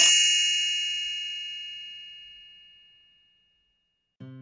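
A single bright chime, struck once and left to ring, fading away over about three seconds: the read-along's page-turn signal.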